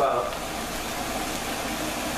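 Green olives, onion and paprika sizzling steadily in a frying pan on the stove.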